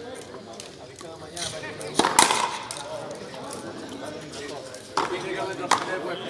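Frontenis rally: sharp cracks of the hard rubber ball struck by rackets and hitting the fronton wall, two close together about two seconds in, the second the loudest and ringing briefly off the wall, then two more near the end.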